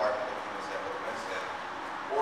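A man speaking into a handheld microphone, his voice carried over a hall's PA system.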